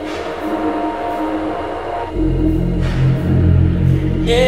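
Liquid drum and bass music. A brief breakdown with the bass cut out and sustained pads playing; the deep bass line comes back in about two seconds in.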